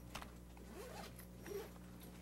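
Faint room noise with a few soft clicks and a brief rustle.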